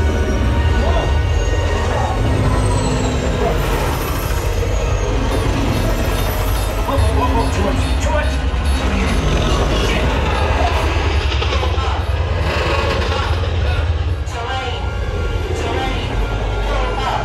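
A film soundtrack played through an Ascendo 7.2.4 Atmos home theater speaker system with subwoofers, heard in the room. A steady, deep bass rumble sits under a dense mix of vehicle or engine noise and music, as a helicopter scene plays.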